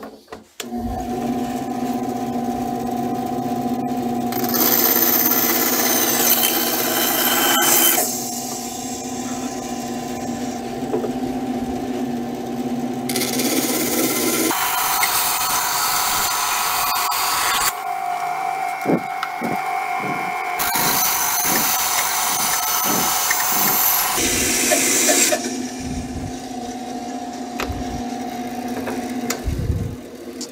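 A bandsaw starts up and runs steadily. Its blade cuts through a 1x2 wooden board three times, each cut a few seconds long, adding a hiss of sawn wood over the motor hum as the stake is trimmed and its point is cut. The saw stops near the end.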